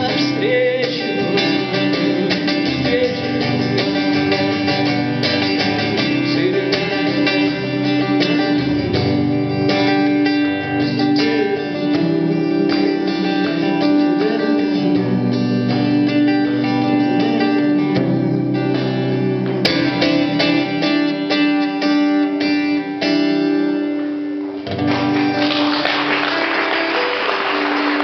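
Acoustic guitar playing a song with a singing voice over it. In the last three seconds it gives way to a dense, even wash of noise.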